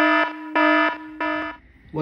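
Red-alert alarm klaxon sound effect: a buzzing tone in three short blasts about half a second apart, stopping about one and a half seconds in.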